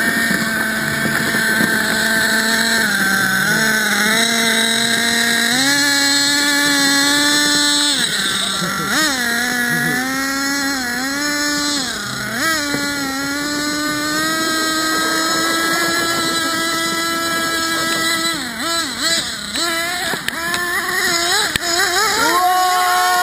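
Small nitro RC buggy engine running and revving up and down under throttle, its pitch dipping and rising every second or two, holding steady for a few seconds past the middle, with quick dips near the end.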